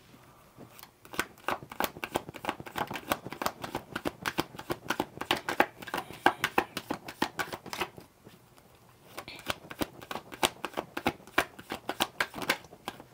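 A deck of tarot cards being shuffled by hand: a fast, irregular patter of cards clicking and slapping against each other, pausing briefly about eight seconds in and then starting again.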